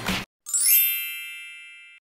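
A single bright chime sound effect, struck about half a second in, ringing with many high tones and fading slowly before it is cut off abruptly.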